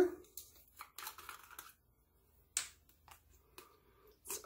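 Light handling of a plastic facial cleanser bottle: faint rustles and small clicks, with one sharper click about two and a half seconds in.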